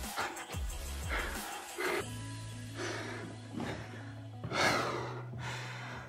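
Background music under a man's heavy breathing, panting in short breaths after a long set of push-ups, with a loud exhale about five seconds in.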